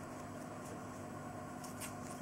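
Quiet room tone with a steady low hum and a couple of faint rustles of yarn and a crochet hook being worked by hand.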